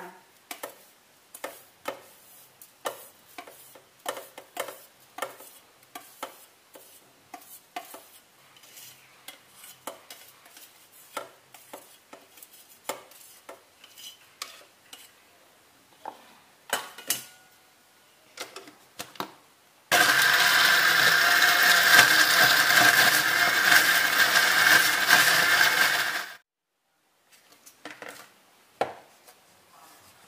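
Electric countertop blender running for about six seconds, starting about two-thirds in and cutting off abruptly, as it grinds mackerel, egg white and seasonings into a fish paste. Before it, a run of light clinks and scrapes from a spoon on a steel plate and the blender jar as ingredients are added.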